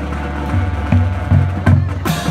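High school marching band playing: low brass notes, with a sousaphone among them, over drum hits on a steady beat, coming in strongly about half a second in.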